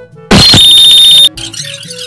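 A loud electronic beep, high-pitched and alarm-like, starting with a harsh crack about a third of a second in and held steady for about a second before cutting off suddenly. It sits over quiet background music.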